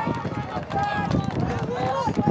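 Players and coaches shouting on a lacrosse field during play, several voices calling out at once in long, held yells, with scattered short knocks underneath.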